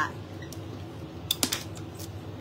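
A quick run of four or five light, sharp clicks about a second and a half in, over quiet room tone.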